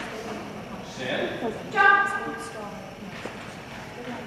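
Talk, with one short, loud call about two seconds in.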